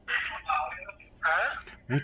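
A voice on the other end of a phone call, heard through the phone's loudspeaker: thin and tinny, speaking in two short phrases. Near the end a man starts speaking close to the microphone.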